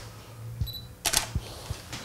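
DSLR camera shutter firing once about a second in, a sharp double click. A short high beep comes just before it.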